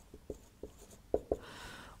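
Dry-erase marker writing on a whiteboard: a few light taps as the pen touches the board, then a longer scratchy stroke near the end.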